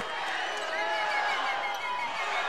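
Basketball arena crowd murmur with short high squeaks of sneakers on the hardwood court.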